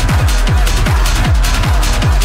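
Hard techno over a festival sound system: a fast, driving kick drum, about three beats a second, each kick dropping in pitch, under sharp high percussion.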